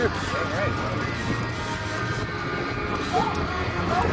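Steady low hum of a boat's engine running, with wind and water noise, and faint music playing in the background.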